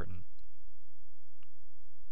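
Steady low electrical hum in a pause between spoken sentences, with one faint click about one and a half seconds in.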